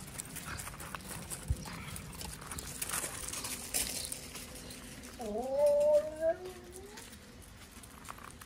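Dogs' paws scuffing and crunching on loose gravel, with rustling and small clicks. About five seconds in comes a drawn-out vocal sound lasting just over a second that dips and then rises in pitch.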